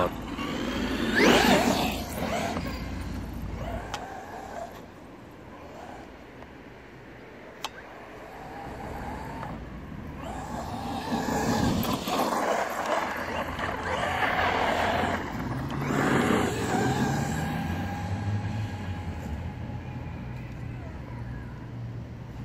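Traxxas X-Maxx electric RC monster truck running, its brushless motor whining and its Pro-Line MX43 tyres on tarmac and grass, with several loud surges as it accelerates. A steady high whine holds through the second half.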